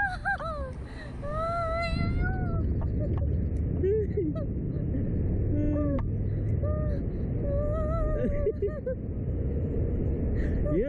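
Two riders on a Slingshot reverse-bungee ride squealing and laughing, with long drawn-out squeals in the first few seconds and shorter bursts of laughter later. Under the voices is a steady rush of wind over the ride-mounted microphone.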